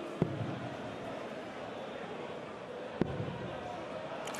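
Two steel-tip darts thudding into a Unicorn bristle dartboard, one shortly after the start and another about three seconds in, over the steady murmur of an arena crowd.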